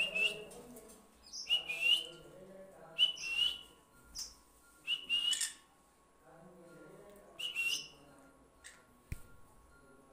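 Green-cheeked conure giving a short rising whistled call five times, one every second or two.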